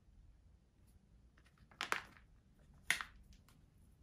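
Plastic flameless ration heater bag crinkling twice as it is handled, the two crackles about a second apart, the second louder, over quiet room tone.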